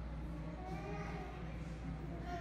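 Faint, indistinct voices of people talking in a large indoor hall, over a steady low hum.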